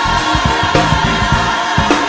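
Live traditional gospel music: a choir singing a long held note over a band keeping a steady beat.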